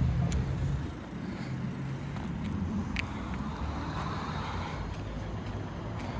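Road traffic on a town street: a steady hum of passing cars, with one vehicle swelling past about four seconds in. A louder low rumble fills the first second.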